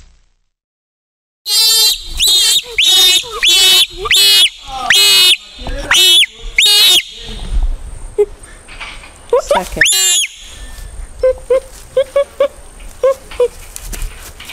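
Bonobo screaming: starting about a second and a half in, a run of about ten loud, high-pitched calls, each rising and falling in pitch, then a single rising call and a softer run of short, lower calls. These are distress cries of the kind bonobos give when attacked.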